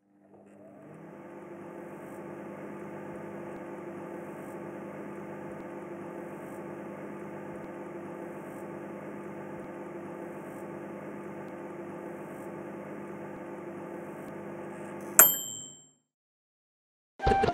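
Steady low droning hum made of several held tones, fading in over the first couple of seconds. About a second before the end, a single sharp metallic ding rings out briefly and everything fades away.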